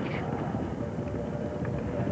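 Steady low rumble of a field of steeplechasers galloping and landing over a fence on heavy ground, picked up by a course-side microphone.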